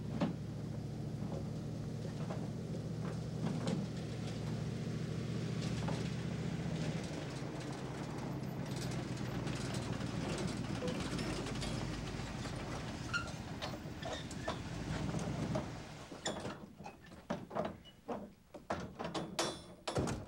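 Ford Bronco's engine running steadily as the SUV drives up and stops, cutting off about 16 seconds in. A run of sharp knocks and clunks follows.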